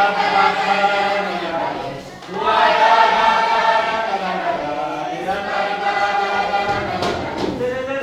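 Several voices singing a folk dance song together in long held phrases, with a brief break between phrases about two seconds in.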